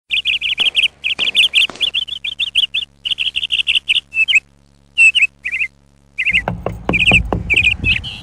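A small bird chirping loudly in rapid runs of short notes, several a second, with brief pauses. In the last couple of seconds a series of irregular low thuds joins the chirping.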